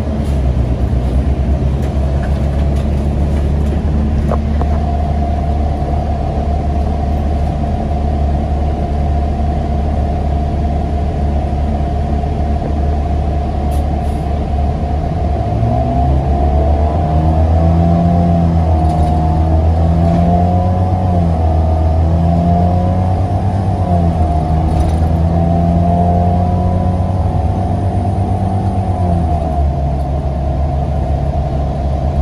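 NABI 42 BRT transit bus engine and drivetrain heard from inside the passenger cabin, running steadily with a whine over a low hum. About halfway through it pulls harder and rises in pitch, the tone wavering up and down, then eases off just before the end.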